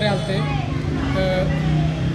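Speech: a man talking in an outdoor interview, with no other distinct sound standing out.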